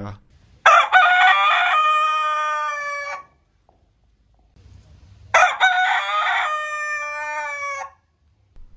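Bantam Bergish Crower (Zwerg-Kräher) rooster crowing twice, each crow lasting about two and a half seconds: a short broken opening, then a long held note that sags slightly at the end. For a long-crowing breed, this crow is scarcely longer than an ordinary rooster's.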